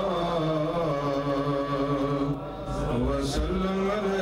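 A man's voice chanting an Urdu devotional poem (manqabat) in long, drawn-out melodic notes, unaccompanied, with a short break in the voice about two and a half seconds in.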